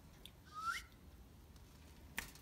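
Male Indian ringneck parakeet giving one short, faint, rising whistled note about half a second in.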